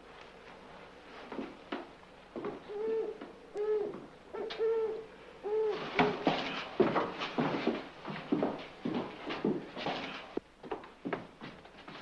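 A run of short owl-like hoots, each rising and falling in pitch, followed by a scuffle of sharp knocks, thumps and hurried steps on wooden boards.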